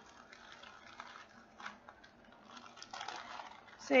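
Faint handling noises: soft rustling with a few light clicks, about one, one and a half and three seconds in, as a diamond painting kit and its packaging are handled.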